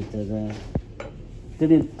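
Two short clinks of a utensil or crockery against a dish, about a second in.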